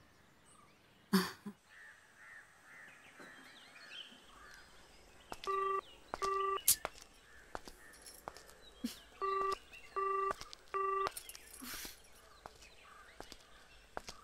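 A mobile phone beeping its battery-dying warning in short even beeps, two and then three more a few seconds later, over faint birdsong. A sharp thump comes about a second in.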